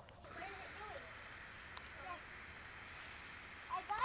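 A long drag on a pod vape: a steady, soft airy hiss of air drawn through the device, lasting about three and a half seconds.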